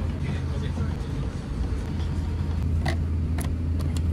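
Steady low hum of an Airbus A350's cabin before takeoff, with a few light clicks in the second half.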